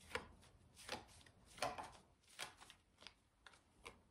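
A deck of tarot cards shuffled by hand, overhand: faint, short card-on-card slaps, about six of them, roughly one every three-quarters of a second.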